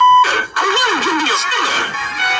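A short steady bleep tone lasting about a quarter second, then a brief drop-out, then a cartoon character's voice sliding up and down in pitch over background music.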